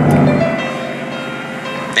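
A P-51 Mustang's Packard Merlin V-12 engine running in flight. It is loud at first and fades over about the first second, then carries on more faintly.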